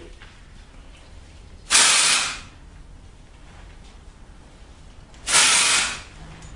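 Aerosol can of Klorane dry shampoo sprayed twice into the hair roots: two short hisses of under a second each, about three and a half seconds apart.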